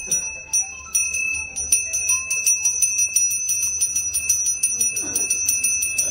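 Temple hand bell rung rapidly and continuously during worship: a steady high ringing struck many times a second.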